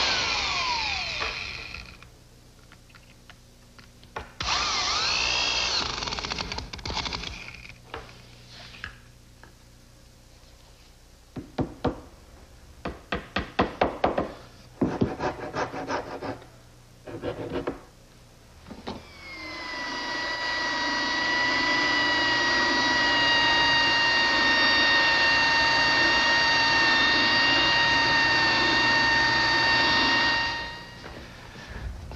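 Woodworking power tools at work on oak edge banding: a motor winds down, a drill runs briefly, then comes a quick run of sharp knocks as fasteners are driven. For the last ten seconds a power tool motor runs steadily with a high whine.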